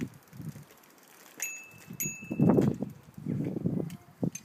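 A child's bicycle bell rung twice, about half a second apart, each ding ringing briefly. Louder low rumbling noise comes and goes around the rings.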